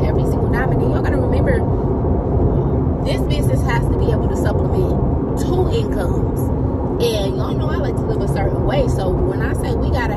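A woman talking inside a moving car, over the car's steady road noise.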